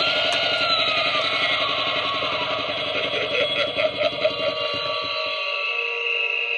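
Tekky Toys pumpkin candelabra Halloween prop playing its built-in spooky sound track through its small speaker, triggered by the try-me button: a dense music-like mix with a falling, sliding tone. The low rumble drops out about five seconds in, leaving sustained tones.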